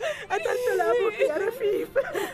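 A woman sobbing and whimpering, her high voice wavering and breaking between gasping breaths.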